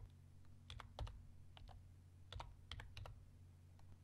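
Faint computer keyboard typing: a few scattered key presses in small clusters as numbers are entered, over a low steady hum.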